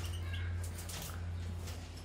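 A few faint, short chirps from caged finches, with light clicks from birds hopping on the perches, over a steady low hum.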